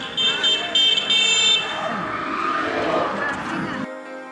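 Vehicle horn honking three short times in quick succession, over street traffic noise and voices.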